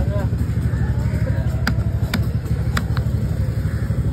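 Heavy fish-cutting knife chopping red snapper on a wooden block: four sharp chops in the second half, over a steady low engine rumble and faint voices.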